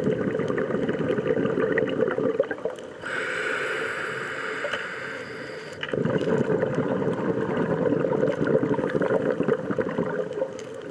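Scuba regulator breathing heard underwater: an exhale of bubbles gurgling for about three seconds, then a hissing inhale of about three seconds, then another long bubbling exhale.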